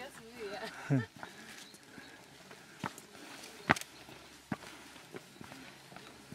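Footsteps on a stone-paved footpath: a few sharp, separate steps about a second apart, with a faint voice at the start.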